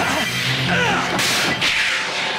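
Cartoon action sound effects over the orchestral score: a sharp whip-like crack and rush of noise a little after a second in, then a falling whoosh, as a magic energy bolt flares.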